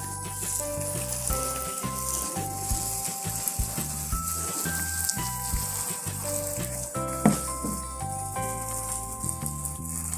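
Background music with a simple held-note melody over a bass line, and under it a steady high hiss of a hand pressure sprayer misting water onto potting soil.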